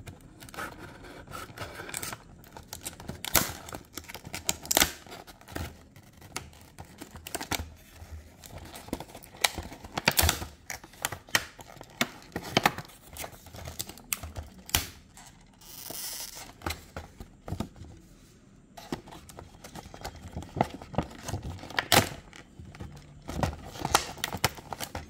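A clear plastic blister pack being cut and prised open and pulled apart from its card backing: irregular crackles, clicks and tearing of stiff plastic, with a brief rasp about two-thirds of the way through.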